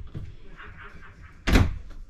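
A wooden RV wardrobe door is swung shut and lands with a single loud thump about one and a half seconds in, with faint light knocks before it.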